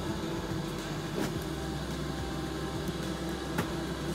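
A steady low hum with two faint short knocks, about a second in and near the end, as meatballs are dropped into a saucepan of simmering milk sauce.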